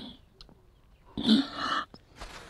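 A woman's short, choked sob lasting under a second, about a second in.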